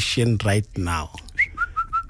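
Someone whistling: one short rising note about a second and a half in, then a quick run of short notes on one pitch, about six a second, after a few words of talk.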